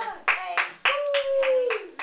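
Several hand claps, a few per second. Partway through, a voice holds one long note that sags slightly at the end.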